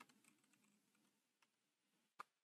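Near silence with a few very faint keystrokes on a computer keyboard, one of them about a second and a half in.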